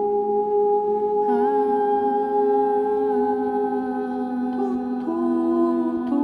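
Ambient drone of layered, sustained vocal tones built up with a microphone and looper. A new held note slides in about a second in, and the chord shifts about five seconds in.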